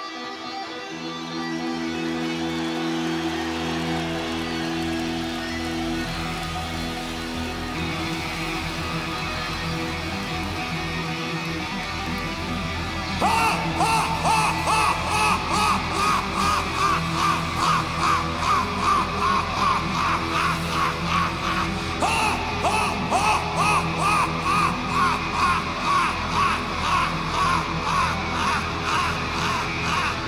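Live electric rock guitar playing a song intro without vocals. Long held notes ring at first, then about thirteen seconds in a louder riff comes in, pulsing in a steady rhythm.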